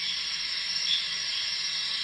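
A steady hiss from the opening seconds of a film trailer's soundtrack.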